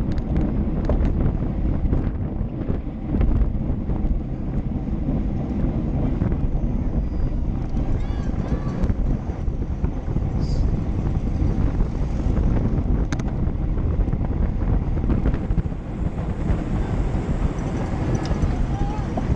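Wind rushing over the microphone of a camera on a racing road bicycle at speed, a steady low rumble.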